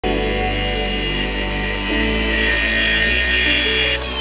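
Cordless angle grinder with a cut-off wheel cutting into a car's sheet-metal roof, a steady high whine, over background music whose bass shifts twice.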